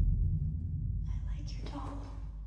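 Deep low rumble of horror-trailer sound design, slowly fading, with a whispered voice about a second in.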